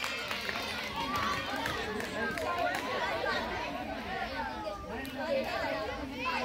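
Overlapping chatter of a group of girls' voices, several talking over one another at once.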